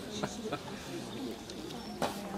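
Indistinct chatter of many voices, children's and adults' voices overlapping, with no single speaker standing out.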